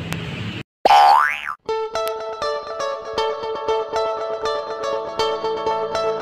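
A rising, swooping sound effect about a second in, then background music of short, evenly spaced, bouncy notes over held tones.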